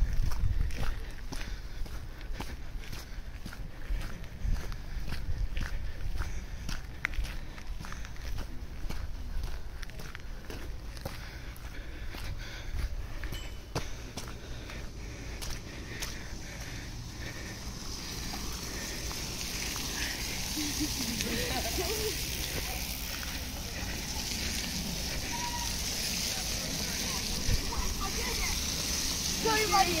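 Footsteps on a muddy gravel woodland track, a soft step about twice a second. From about halfway, a group of mountain bikes comes near, their tyres hissing through the wet mud, and riders' voices call out briefly twice, the second time as they pass.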